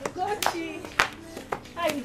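Several sharp hand claps, about two a second with the loudest about a second in, mixed with short shouted exclamations from women's voices.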